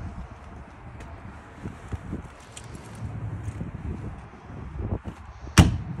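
Travel trailer's rear access door pushed shut, landing with one sharp bang near the end.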